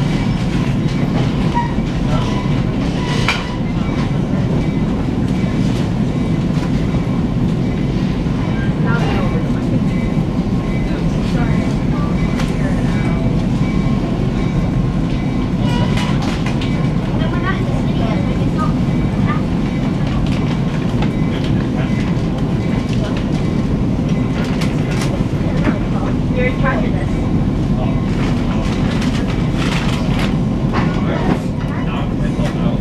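Inside a Metro-North Comet V commuter rail coach rolling slowly along the platforms into a terminal: a steady low rumble of the wheels and running gear on the track, with a few clicks from rail joints or switches.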